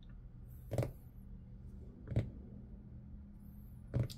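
Quiet room tone with a faint steady low hum, broken by two brief soft noises about a second and a half apart.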